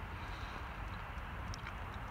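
Faint, steady background noise with a low rumble and no distinct handling sounds.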